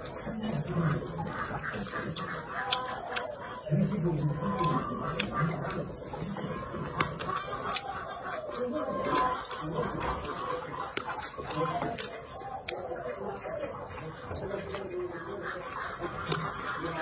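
Close chewing and lip-smacking with sharp wet clicks while eating roast chicken, over clucking poultry calls.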